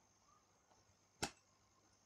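Near silence with one short, sharp click a little over a second in, from the computer being operated.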